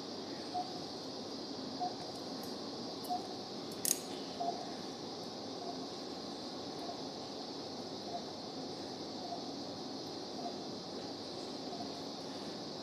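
Quiet operating-room background: a steady high hiss with a faint, evenly spaced beep a little more than once a second, typical of an anaesthesia monitor's pulse tone. A single sharp metallic click, as from a surgical instrument, about four seconds in.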